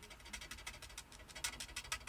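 Felt-tip nib of a TriBlend alcohol marker (hydrangea mid tone) scratching across card in a rapid run of short, light colouring strokes, faint.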